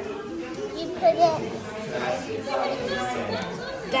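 Indistinct background chatter of children and adults talking in a room. A child's high voice stands out loudly about a second in.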